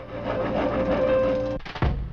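A handsaw played as a musical saw, holding one steady, slightly wavering note for about a second and a half. A low thud follows as the sound breaks off.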